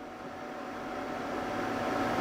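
Steady hum and fan whir of a solar off-grid inverter, with a thin faint whine above it, growing slowly louder.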